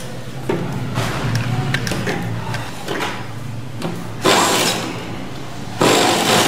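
Fabric being handled and slid across the sewing table over a low steady hum, then an industrial sewing machine stitching in a short run about four seconds in and starting to stitch again just before the end.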